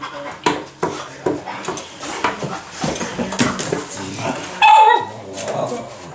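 A dog gives one short, high-pitched call about five seconds in, falling in pitch at its end, amid scattered light clicks and knocks.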